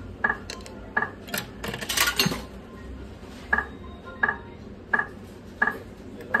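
Bar slot machine sounding a short click-like tone about every 0.7 seconds as it runs, with a burst of metallic clinks between about one and a half and two and a half seconds in as a coin is fed in, adding one euro of credit.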